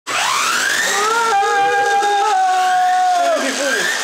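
RC truck's electric motor whining as it is throttled with the wheels off the ground. The whine rises over the first second, holds at a steady high pitch, then falls away near the end.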